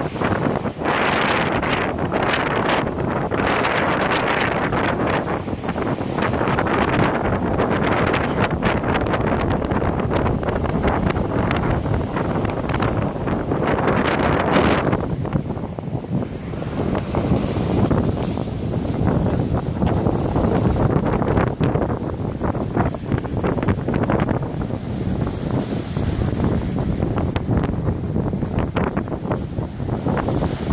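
Storm wind buffeting the microphone over rough sea surf breaking against breakwater rocks. The roar swells and eases in surges, loudest near the start and around halfway.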